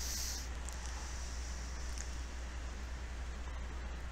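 Steady low electrical hum and faint hiss of the recording's background noise, with a brief faint hiss at the very start.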